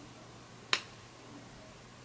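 A single sharp click about three quarters of a second in, over faint steady hiss.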